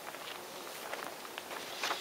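Soft footsteps through long grass over a steady outdoor hiss, a little louder near the end.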